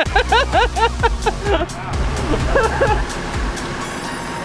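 Laughter and voices over background music with a steady low bass line that drops out about three and a half seconds in.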